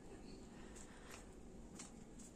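Near silence: faint background noise between spoken remarks.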